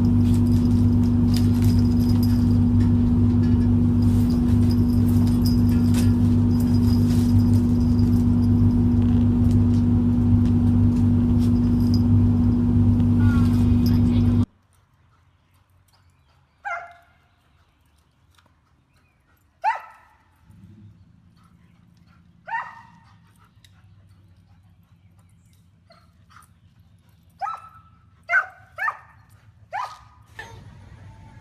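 A loud steady mechanical hum, which cuts off suddenly about halfway through. Then a dog barking in short single barks a few seconds apart, with three quick ones near the end.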